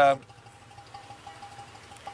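A man's voice trails off, then a pause filled only by a faint, steady machine hum with a thin high tone from factory equipment.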